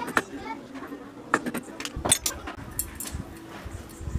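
Metal clutch plates from a Yamaha SZ's wet clutch clinking against each other as they are handled: a scattered series of sharp metallic clicks.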